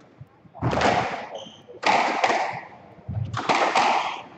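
Squash rally: three loud hits, about 1.2 to 1.5 seconds apart, as the ball is struck by rackets and hits the court walls, each ringing on briefly in the enclosed court.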